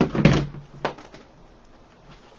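A dull knock of handling at the work surface, then a single sharp snip of a black plastic zip tie's tail being cut off, followed by faint rustling.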